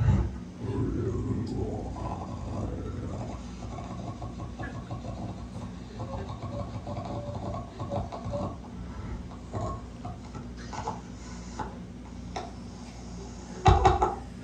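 A performer's voice making wordless mouth and throat noises into a microphone: quiet, rough, noisy sounds with brief pitched fragments, part of an improvised vocal cadenza in a sound poem. A loud sharp burst of voice comes near the end.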